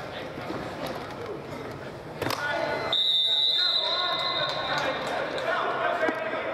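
A sports whistle blown in one long, steady blast of about two seconds, starting about three seconds in and ending a football play. Players and onlookers talk in the background, and there is a single sharp smack just before the whistle.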